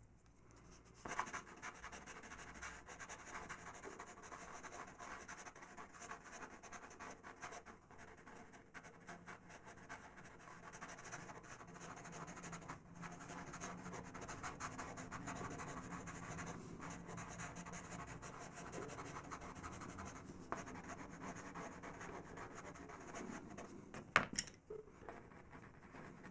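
Faber-Castell PITT pastel pencil scratching and rubbing across textured PastelMat paper in quick, repeated short strokes, starting about a second in, with a couple of brief pauses.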